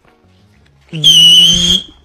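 A referee's whistle blown once in a single steady, slightly wavering blast lasting about a second, starting about a second in, with a low steady tone underneath.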